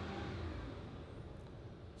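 Faint low rumble of a heavy vehicle outside, slowly fading: the refuse lorry on bin collection day.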